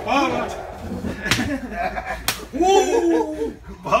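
Two sharp open-hand slaps on a person, about a second apart, amid men's excited shouting and laughter.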